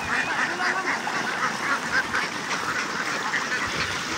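A large flock of domestic ducks quacking continuously, many calls overlapping into a steady chatter.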